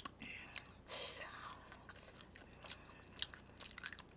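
Faint, close-up chewing of a mouthful of spicy pig's feet: soft, irregular mouth clicks and smacks.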